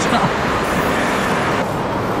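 Steady rushing of a shallow mountain stream running over stones, with a brief laugh just at the start. The rush turns duller about one and a half seconds in.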